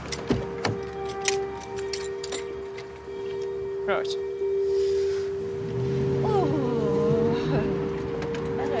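A car door being unlatched and opened, with a few sharp clicks in the first second and a half, under a steady sustained music drone; a person's voice is heard briefly near the end.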